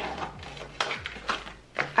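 Light taps and clicks of small cardboard cosmetics boxes and paper cards being shuffled around on a tabletop, several separate knocks over two seconds.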